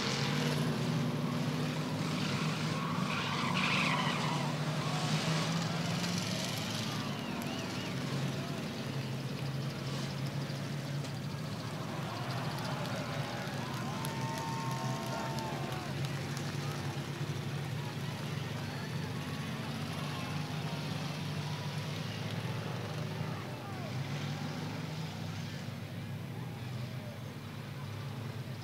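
Race car engines idling and running slowly while the field is held under a caution, a steady low drone, louder in the first few seconds, with faint voices in the background.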